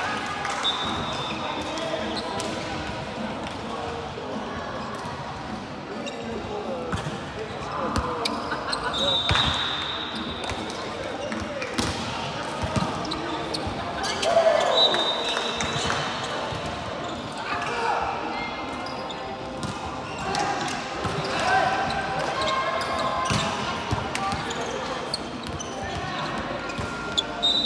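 Volleyballs being set, hit and bouncing on the court floor, sharp slaps scattered throughout and loudest about halfway through, amid players' chatter in a large sports hall.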